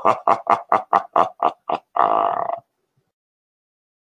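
A laugh: a run of short 'ha' pulses about four a second, ending in one longer held note that stops about two and a half seconds in.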